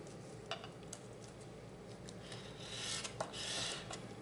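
Bone folder rubbed back and forth over microfine glitter pressed into sticky tape on a cardstock panel, burnishing the glitter down: a faint scratchy rubbing that grows louder in the second half, after a couple of light ticks in the first second.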